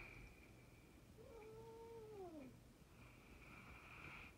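A domestic cat giving one faint, drawn-out meow about a second in, holding its pitch and then sliding down at the end.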